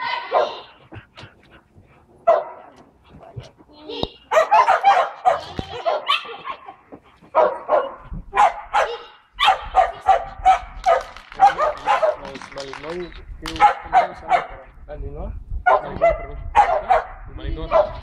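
A dog barking over and over in quick runs of short barks, with a quieter stretch between about one and four seconds in.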